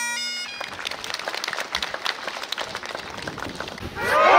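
Highland bagpipes finishing, their drone and chanter cutting off about half a second in, followed by a crowd clapping.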